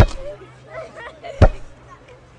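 A rubber play ball bouncing, two short thuds about a second and a half apart.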